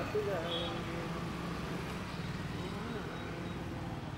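Steady low rumble of road traffic with faint voices in it.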